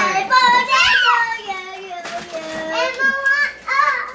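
A young child's high-pitched voice calling out without clear words, in long gliding calls that fall in pitch over the first few seconds and rise again near the end.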